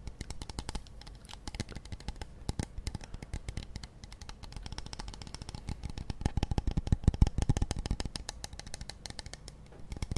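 Fingernails tapping and scratching on a pump-top cosmetic bottle held close to the microphone: a dense, irregular run of light clicks that grows louder between about six and eight seconds in.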